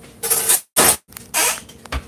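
Plastic snack-bar wrapper crinkling in the hand in three short bursts, with the sound cutting out completely twice in between, then a few light clicks near the end.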